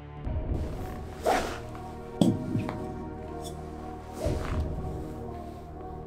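Background music plays while a few sharp knocks of golf shots land: one about a second in, another about two seconds in, and a third about four seconds in, as balls are hit at a thick wooden board.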